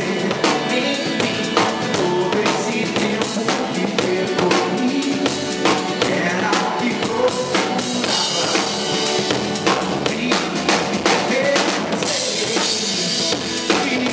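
Live band music driven by a drum kit: rapid snare and bass-drum strikes with cymbals, the cymbals brightest about eight seconds in and again near the end.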